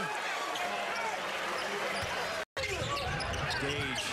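Arena sound of a college basketball game: crowd voices and shouts with court noise, broken by a sudden short dropout about two and a half seconds in, after which play resumes with the ball being dribbled.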